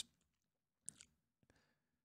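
Near silence: room tone, with two faint short clicks close together about a second in.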